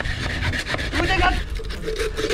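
Hand saws rasping back and forth through bamboo, several being worked at once.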